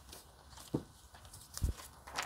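Quiet handling noise: a few faint knocks and taps as a hand touches the recording device, the loudest a low thump near the end.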